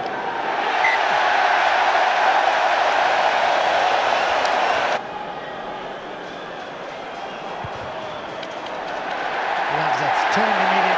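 Stadium crowd cheering loudly as a penalty kick sails toward the posts; the roar cuts off abruptly about halfway through, giving way to quieter crowd noise that swells again near the end.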